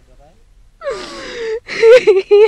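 A woman crying in grief. About a second in comes a breathy wail falling in pitch, then louder, wavering sobbing cries near the end.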